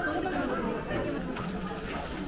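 Shoppers' voices chattering at once at a low level, with no single voice standing out.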